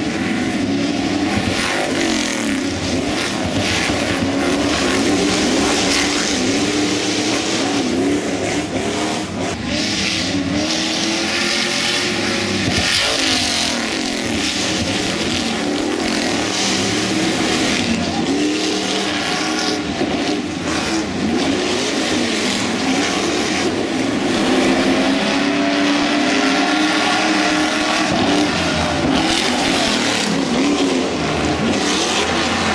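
Speed Energy Formula Off-Road racing trucks running on the circuit, their engines revving up and down again and again as trucks pass one after another.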